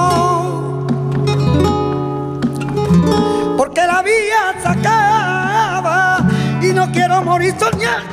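Male flamenco singer (cantaor) singing long melismatic phrases with vibrato over flamenco acoustic guitar accompaniment. The voice drops out briefly after the start, leaving the guitar alone for about three seconds, then comes back in with a new sung phrase.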